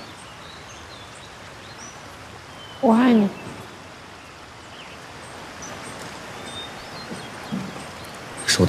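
Scattered short, high bird chirps over a steady outdoor background hiss, with one brief wordless voice sound about three seconds in.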